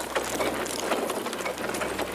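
A chariot rattling along, heard as a dense, even clatter of wheels over a steady low hum.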